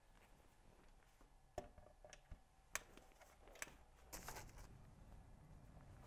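Faint handling of a shoot-through umbrella as its shaft is fitted into a studio light's umbrella mount: three small clicks about a second apart, then soft rustling.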